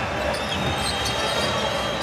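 Basketball being dribbled on the court, with steady crowd noise filling the arena.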